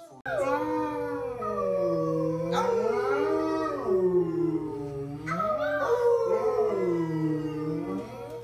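A dog howling in long, drawn-out calls that rise and fall in pitch, with overlapping howls.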